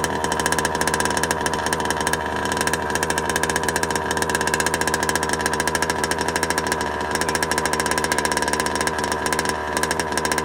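Two-stroke petrol engine of a Losi DBXL 2.0 gas 1/5-scale RC buggy idling steadily, its fast, even putter holding one pitch.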